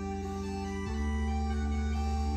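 Background workout music: held keyboard-like chords, with a change of chord a little under a second in.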